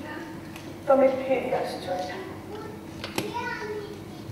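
A woman speaking dramatic stage dialogue in Odia in two phrases, with a steady low hum underneath.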